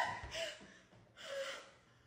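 A person panting: two breathy gasps about a second apart, each with a faint voice in it.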